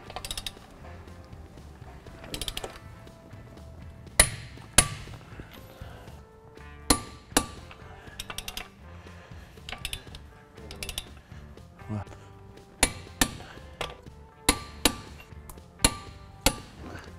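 Click-type torque wrench on the lug nuts of a front wheel, giving sharp metallic clicks as each nut reaches its set torque of 100 ft-lb. The clicks come mostly in pairs about half a second apart, several times, with fainter clicks between.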